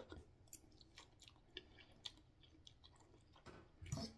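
Faint chewing of a mouthful of ramen noodles, with small scattered mouth clicks, and a slightly louder short sound just before the end.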